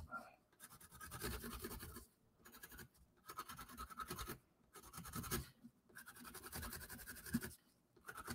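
Colored pencil scratching faintly over corrugated cardboard in four short runs of quick shading strokes, with brief pauses between them.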